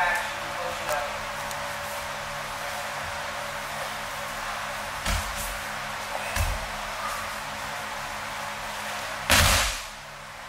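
Aikido throws and breakfalls on tatami mats: two dull thuds of bodies landing around the middle, then one loud impact near the end, over a steady hiss.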